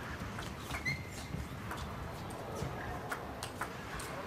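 Table tennis rally in an arena: sparse, irregular clicks of the ball off bats and table, with a brief squeak about a second in, over a low hall hum.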